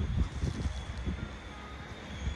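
Wind buffeting the microphone, a low uneven rumble with a faint rushing hiss.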